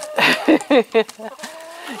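Backyard hens vocalizing, with a short drawn-out note in the second half, mixed with a woman's brief laugh.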